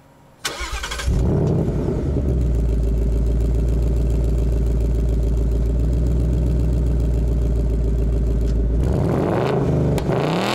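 2019 Ford Mustang Bullitt's naturally aspirated 5.0 L V8 being started through its active exhaust. The starter cranks briefly, the engine catches with a loud flare about a second in and settles into a steady idle, then the throttle is blipped near the end, the pitch rising and falling.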